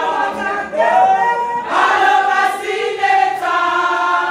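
A large group of women singing together in chorus.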